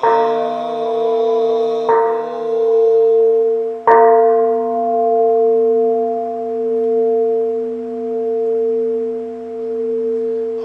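Large Buddhist bowl bell (kin) struck three times, about two seconds apart, the third strike the loudest. Each strike is left to ring on in a long, wavering hum, marking the close of the chanted verse.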